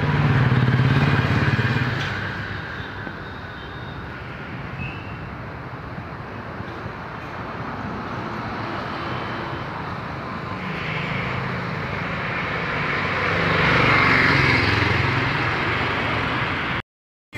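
Street ambience with motor traffic: a steady noise bed with engines passing, louder in the first couple of seconds and again near the end.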